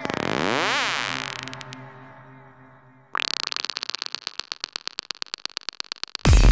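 Psytrance breakdown with the kick drum dropped out: a synth sweep gliding up and down in pitch fades away, then about three seconds in a high-pitched synth stutters in rapid pulses, about ten a second.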